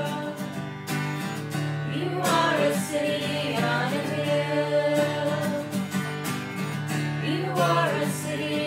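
A small group singing a worship song together, accompanied by a strummed acoustic guitar.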